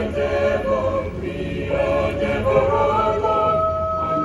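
Mixed choir of men's and women's voices singing the words "for ever and ever". The phrase ends on a long held chord from about three seconds in.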